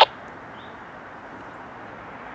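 Faint, steady sound of a distant freight train led by an EMD SD70MACe diesel locomotive, approaching. A scanner radio cuts off right at the start.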